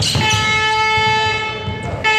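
A horn sounds one long steady blast, a single held pitch with many overtones, cutting off shortly before a second blast begins.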